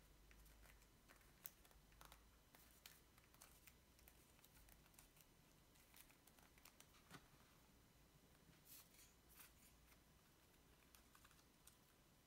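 Near silence: room tone with a faint low hum and scattered faint clicks and rustles of paper being handled.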